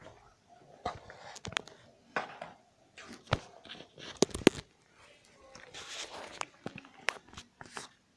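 Handling noise from a recording device being picked up and moved: irregular clicks, knocks and fabric rustling against the microphone, starting about a second in.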